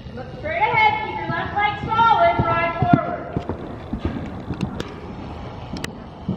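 A horse's hooves thudding dully on the soft dirt footing of an indoor arena as it canters. A high-pitched voice sounds in drawn-out notes over roughly the first three seconds.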